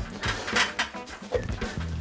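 Background music playing quietly, with a few faint knocks.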